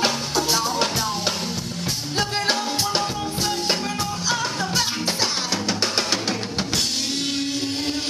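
Live band playing: drum kit with bass drum and cymbals under keyboard, with a singer on the microphone. The dense drumming stops near the end, leaving one held low note as the song finishes.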